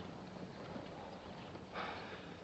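Faint steady hiss of an old film soundtrack, with a short soft noise near the end.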